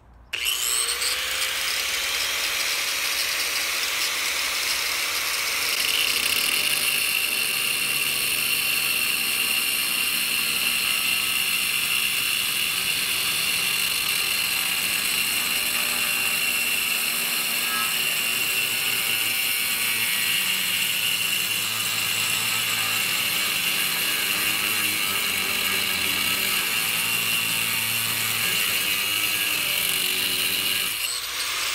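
Angle grinder with a cut-off wheel starting up suddenly, its pitch rising as it spins up, then cutting steadily through 1×2-inch, 1/8-inch-wall steel channel, a continuous high grinding whine.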